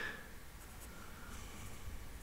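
Pencil lead scratching on paper in short, faint strokes as an equation is written out by hand.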